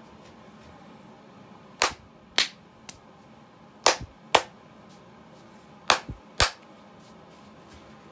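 Hand claps, sharp and loud, in three pairs: the two claps of each pair about half a second apart, the pairs about two seconds apart.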